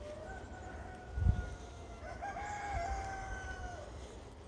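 Rooster crowing, one long drawn-out call that drops in pitch at the very end. A low thump about a second in is the loudest sound.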